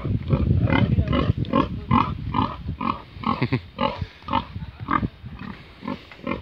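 A sow grunting in a steady run of short grunts, about two or three a second, as she roots in the soil with her snout.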